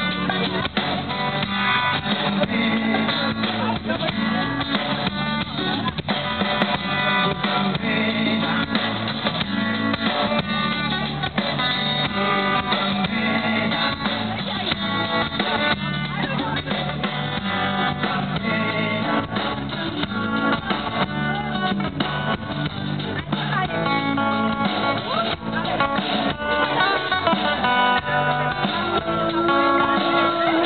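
Live band music led by a guitar, with a drum kit keeping the beat and a woman's voice singing at times.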